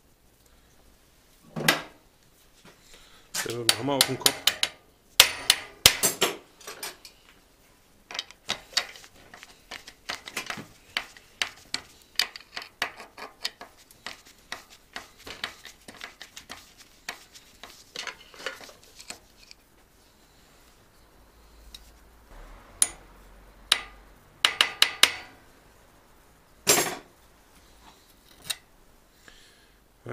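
Metal tools clinking and knocking on the steel cotter pin and nut of a vintage Göricke bicycle's cottered crank as the rusty cotter is worked loose and removed. There are a few sharp strikes near the start, a long run of quick small clicks through the middle, and more strikes toward the end.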